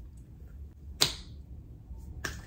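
A single sharp snap about a second in, with a brief hissy tail, over faint room tone.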